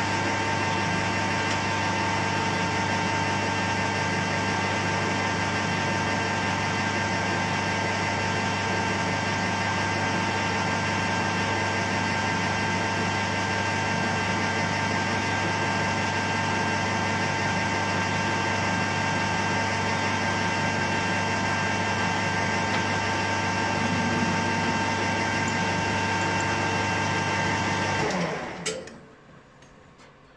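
Small metal lathe running steadily with a motor whine while turning a small pin down to size; about two seconds before the end it is switched off and winds down, followed by a couple of faint clicks.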